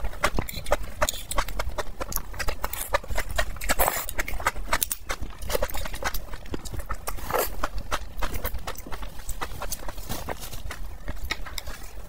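Close-miked chewing of mushrooms in chili oil: a dense, irregular run of wet clicks and smacks from the mouth, with a couple of longer slurps.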